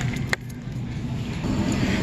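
Steady low background hum of a supermarket, with one sharp click about a third of a second in as the plastic clamshell cupcake container is handled.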